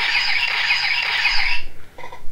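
Star Trek-style transporter beam sound effect: a shimmering high hiss over steady ringing tones, fading out after about a second and a half.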